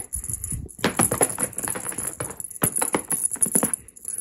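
A cat toy being whisked rapidly around during play: a quick, irregular run of rattling, jangling clicks.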